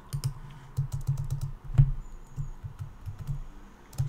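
Typing on a computer keyboard: an irregular run of key clicks, with one louder key strike a little under two seconds in.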